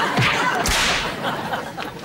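Studio audience laughter, with a sharp swish about three-quarters of a second in.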